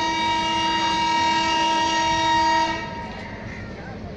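Train horn sounding one long, steady blast that cuts off about three seconds in.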